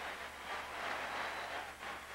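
Stadium crowd noise at a football game, a steady, even wash of many voices with no single sound standing out.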